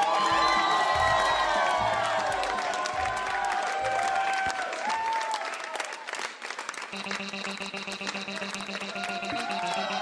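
Studio audience clapping and cheering over music. About seven seconds in, a steady held chord begins.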